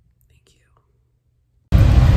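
Near silence with a faint whisper, then, about a second and a half in, a sudden cut to the loud, steady rumble inside a moving vehicle.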